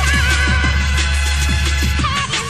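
Electronic rave dance music from a DJ mix: a loud steady bassline under repeated drum hits, with a high wavering melody line over the top.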